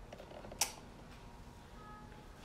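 Faint room tone in a pause between speech, with one sharp click about half a second in.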